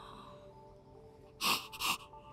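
A woman sniffling while crying: two quick, sharp sniffs about a second and a half in.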